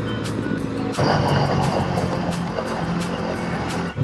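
Motorcycle engine running on the move, with wind noise, under background music; the sound gets a little louder about a second in.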